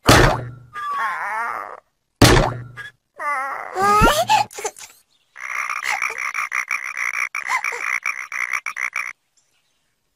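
Cartoon sound effects: two sudden hits and wobbling comic tones in the first half, then a chorus of cartoon frogs croaking together in a rapid, pulsing din for about four seconds, which stops abruptly a second before the end.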